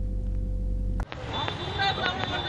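A low steady studio hum for about a second, then a sudden cut to outdoor street noise with faint voices, a thin steady high tone and a few clicks.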